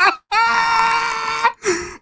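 A man's drawn-out "ooh" of reaction, held at one steady pitch for about a second, followed by a brief second vocal sound near the end.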